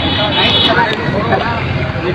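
Several people talking at once in a crowd.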